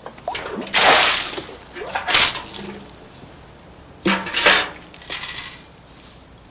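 Water splashing over a heap of black river pebbles in several uneven bursts, the first and longest about a second in and the others just after two seconds and four seconds in.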